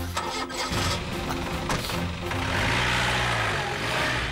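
A jeep's engine starting and pulling away, its sound growing louder as it drives past, under background music.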